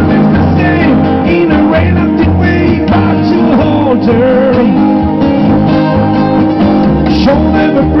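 Live acoustic trio playing an instrumental passage: two acoustic guitars over a plucked double bass, with sliding lead lines on top. A voice comes back in with the next sung line right at the end.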